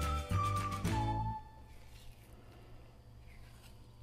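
Background music with a whistle-like lead melody over a bass line, stopping about a second and a half in. After that only a faint low hum remains.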